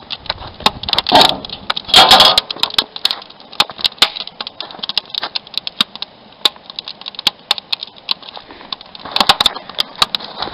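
Wood fire crackling and popping with sharp, irregular clicks inside a steel barrel barbecue. About one and two seconds in come louder metallic clanks as a kettle is set on the iron grate over the fire, with another brief clatter near the end.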